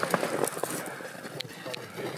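Faint knocks and scrapes of a block of frozen ballistic gel being handled and tipped up on end on a steel drum, a few small clicks scattered over a quiet background.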